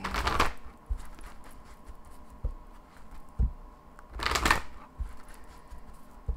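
A deck of cards being shuffled by hand: two short rustling shuffles about four seconds apart, with a few light knocks of the cards against the table in between.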